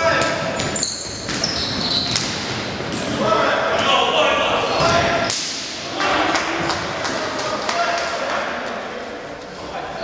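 Futsal ball being kicked and bouncing on a wooden gym floor, with players shouting to each other, echoing in a large sports hall.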